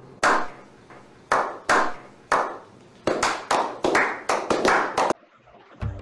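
A slow clap by one person: single hand claps about a second apart that speed up to roughly four a second, then stop abruptly about five seconds in. Each clap leaves a short echoing tail.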